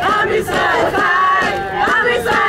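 A crowd of demonstrators chanting loudly in unison, many voices repeating a short shouted phrase in a steady rhythm.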